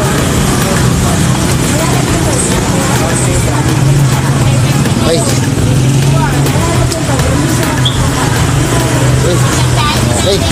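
Scooter engine idling steadily, with indistinct voices talking in the background.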